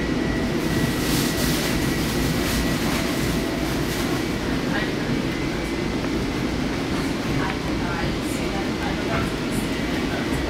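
Inside a Long Island Rail Road commuter car running along the track: a steady rumble of wheels and running gear, a faint high whine held throughout, and occasional light clicks from the rails.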